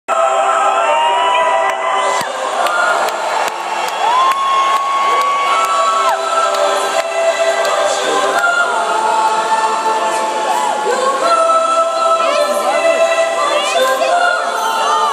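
A choir singing long held notes in several voice parts, led live by a conductor, with an arena crowd cheering underneath.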